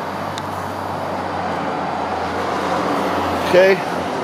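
Steady road traffic noise from a nearby road, with a low steady hum underneath.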